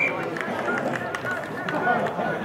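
Several voices of players and spectators calling out and talking at once around a rugby league field. A steady high whistle blast cuts off just as it begins.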